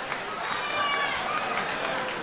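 Audience in a large hall laughing, a steady crowd noise, with one higher-pitched laugh rising over it about half a second in.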